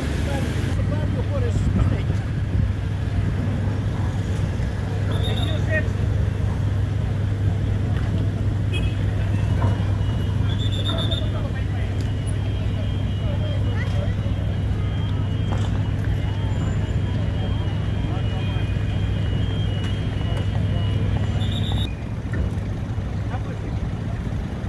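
Steady low engine hum at a busy ferry quay, with a crowd of people talking. A thin, high intermittent beeping runs through the middle and stops shortly before the end.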